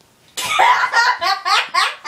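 A girl laughing hard in loud, high-pitched bursts that start about a third of a second in and come several times a second.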